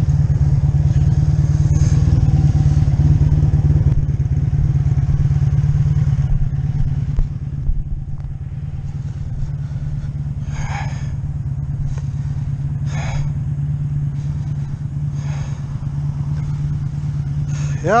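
1985 Honda V65 Sabre's 1100cc V4 engine running steadily at low speed, settling to a quieter idle about seven seconds in. A few short, higher sounds come over it in the second half.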